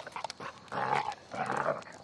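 A dog growling twice in play, two short rough growls about half a second each near the middle, amid light clicking.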